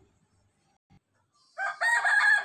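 Near silence, then about one and a half seconds in a rooster starts crowing loudly in one long held call.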